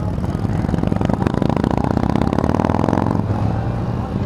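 Motorcycle engine running under load as the bike accelerates out of a turn, its note easing back about three seconds in.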